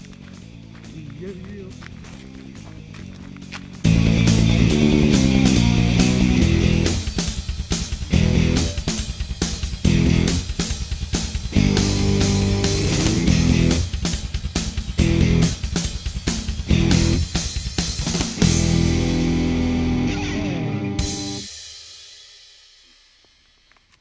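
Background music with guitar and drums: a quieter opening, then the full band comes in loudly about four seconds in, and the music fades out over the last two or three seconds.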